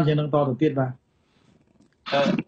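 A man's voice speaking, which stops about halfway through and is followed by near silence.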